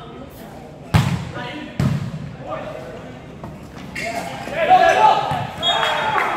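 A volleyball struck hard about a second in, a serve, followed by a second, softer hit just under a second later, each ringing briefly in a large gym hall.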